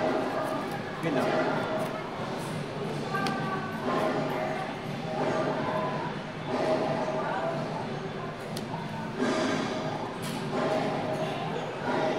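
Indistinct voices talking in a large room, with soft clicks of sleeved trading cards being shuffled.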